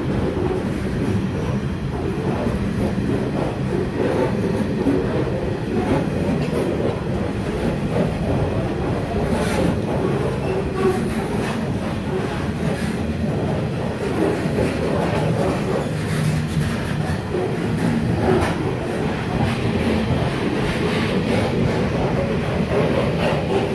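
A freight train of covered hopper wagons rolling steadily past at close range. The wheels rumble on the rails, with scattered sharp clicks as they cross rail joints.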